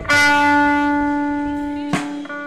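An amplified band instrument in live music holds one long, steady note that fades slowly like a struck bell. A short sharp sound comes just before the end.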